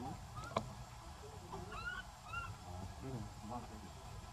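A sharp snap about half a second in, then a few short, high animal calls that rise and fall in pitch around the middle.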